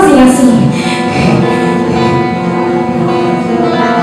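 Music played on an acoustic guitar, with sustained notes and light strumming.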